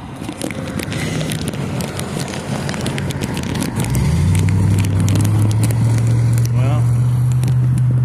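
Street noise: a vehicle engine sets in with a steady low hum about four seconds in and gets louder, over scattered clicks and crackles.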